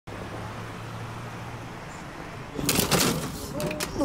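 A vehicle's engine hums steadily, heard from inside the cab. About two and a half seconds in, a loud burst of noise breaks in, and a person's voice follows near the end.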